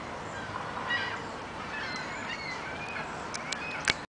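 A flock of gulls calling, many short calls overlapping and gliding up and down in pitch. A few sharp clicks near the end, the loudest just before it stops.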